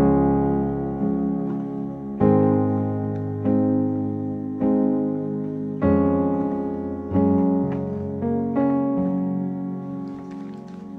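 Piano chords in C sharp major, struck a little over a second apart and left to ring and fade. A C sharp major chord gives way in the second half to the C sharp over F passing chord.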